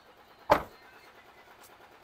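A Maruti Suzuki Eeco van's front door being shut, one sharp slam about half a second in.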